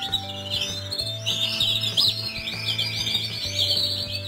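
Domestic canaries singing: fast rolling trills and chirps, high-pitched and continuous, over a low steady hum.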